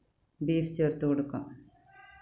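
A person's voice speaking a few syllables, starting about half a second in after a brief near-silent gap; faint steady tones come in near the end.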